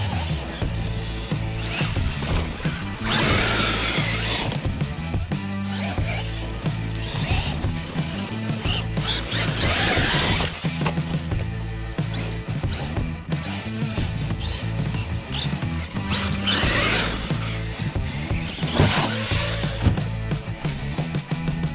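Rock music with guitar over a steady, stepping bass line, with several louder noisy swells a few seconds apart.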